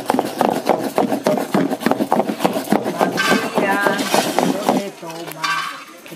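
Fast, rhythmic clinking and knocking of a utensil against a pot or dish, about six knocks a second. A woman's voice sings over it from about three seconds in.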